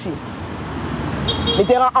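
Steady street traffic noise with a low hum, a short high beep about a second and a half in, and then a voice starting to speak near the end.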